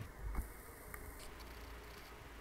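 Clear plastic packaging of a squishy toy handled lightly in the fingers: a few faint crinkles and small clicks, the loudest near the start and about a third of a second in.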